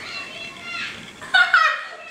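Women laughing, with a loud, high-pitched burst of laughter about a second and a half in.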